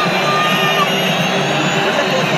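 Large football stadium crowd chanting and cheering, a dense, steady roar of many voices.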